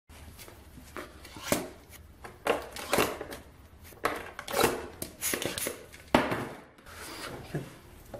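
An advent calendar being handled and a door pressed open: irregular taps, clicks and scraping rustles.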